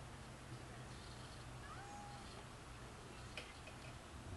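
Faint outdoor background with a low steady hum, a couple of short, faint chirps near the middle and a light click about three and a half seconds in.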